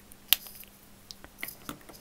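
Handling of a Copic Ciao marker and paper on a tabletop: one sharp click about a third of a second in, then a few faint ticks and light paper rustles.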